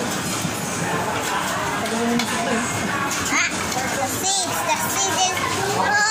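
Busy restaurant din: many overlapping voices chattering, children's voices among them, at a steady level.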